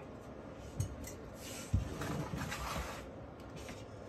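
Rummaging among objects on a shelf: rustling and handling noise with a few short knocks as things are moved, the loudest knock a little under two seconds in.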